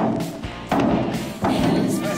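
A large metal trash can being kicked hard, three hollow thuds about three quarters of a second apart, over background music.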